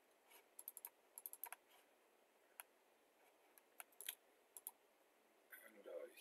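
Faint clicks from a computer keyboard and mouse: a quick run of clicks about a second in, then single clicks a second or so apart.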